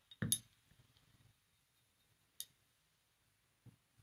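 A few small clicks of a paintbrush against a ceramic watercolour palette: a short soft knock just after the start, one sharp click in the middle and a faint tick near the end, with near silence between.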